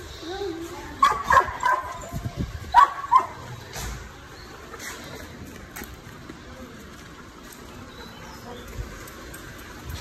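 A Doberman giving a few short, high-pitched vocal sounds in the first three seconds, the loudest about a second in and again near three seconds, followed by a few faint clicks.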